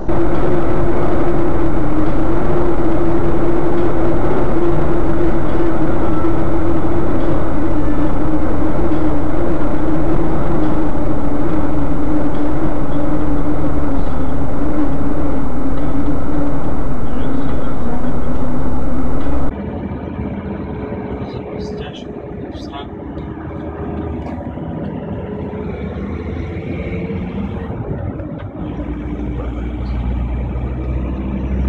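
Loud, steady road and engine noise recorded by a vehicle's dashcam, with a hum that slowly drops in pitch. It cuts off suddenly about two-thirds of the way through. What follows is a quieter recording of road noise with a few sharp clicks.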